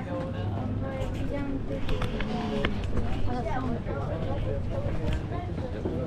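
A crowd of tourists chatting, several voices overlapping at once, with a few short clicks about two seconds in.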